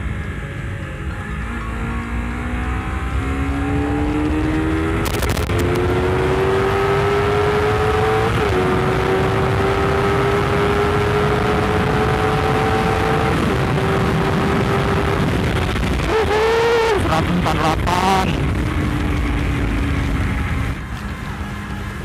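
Honda CBR250RR's parallel-twin engine at full throttle, its pitch climbing steadily in each gear and dropping back at each upshift, during a run up to about 148 km/h, with a steady rush of wind noise. About 16 s in, the revs waver up and down, then settle lower and steadier.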